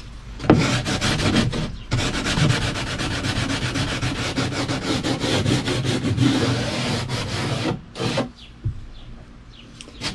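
Sandpaper rubbed by hand in quick back-and-forth strokes on the wooden rim of a kayak's cockpit opening. The rubbing stops about eight seconds in, after one last short pass.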